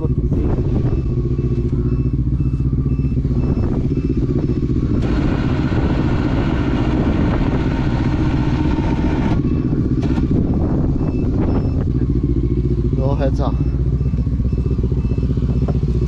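Quad (ATV) engine idling steadily, with a stretch of rushing noise from about five seconds in that lasts some four seconds.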